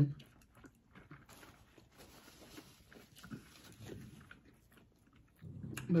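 Soft chewing and mouth sounds of people eating pizza, with small scattered clicks.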